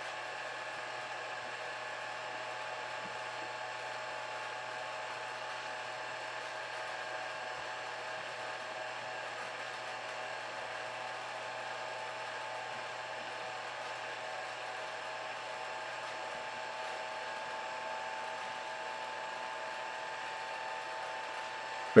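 A steady machine hum with several faint, constant whining tones over it, unchanging throughout and with no distinct events.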